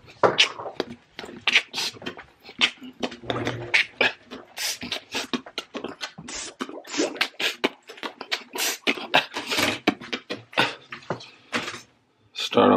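Handling noise from a handheld phone being carried and moved about: an uneven run of short clicks, bumps and rustles.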